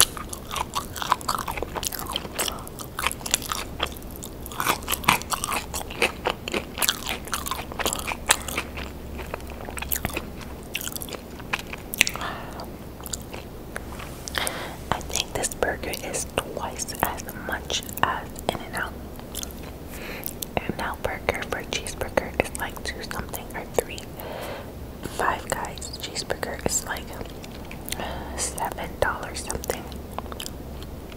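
Close-miked chewing of a mouthful of burger and fries, with many small wet mouth clicks and smacks coming irregularly throughout.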